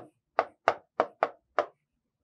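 A pen knocking against an interactive touchscreen board as digits are written: five sharp taps in quick, uneven succession.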